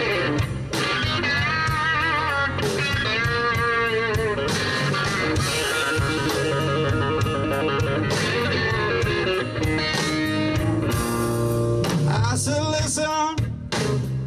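Electric blues guitar solo played live with a drum kit and band behind it, in a slow blues groove; the lead notes are bent and shaken with vibrato, and the band thins out briefly near the end.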